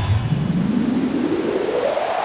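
Electronic white-noise riser: a hiss whose pitch sweeps steadily upward, the kind of filter-sweep effect used to lead out of a track. The bass of the previous track fades out right at the start.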